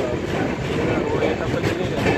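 Rumble of a departing passenger train's wheels on the rails, heard from its open coach doorway, with people talking over it.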